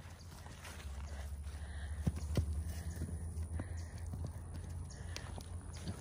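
Hoofbeats of a Clydesdale foal running on sandy, grassy ground: a few scattered thuds, the clearest a little past two seconds in, over a steady low rumble.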